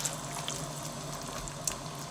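Kitchen extractor hood running with a steady low hum, while a spatula stirs meat and vegetables in a pot of freshly added water, with a few faint scrapes and clicks.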